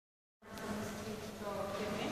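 A steady low buzz that starts about half a second in.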